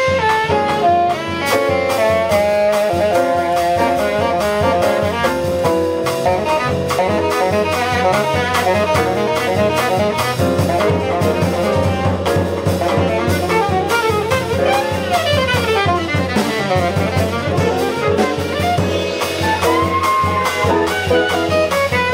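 Live small-group jazz: an alto saxophone plays a solo line of fast runs over piano, double bass and a drum kit keeping time on the cymbals.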